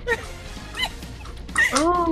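High-pitched whining vocal sounds, bending up and down in pitch and louder toward the end, over a low steady hum.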